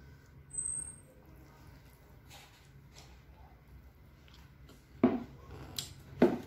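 Faint sounds of eating a mouthful of rice by hand: quiet chewing with a few soft ticks, and two sharp mouth clicks near the end.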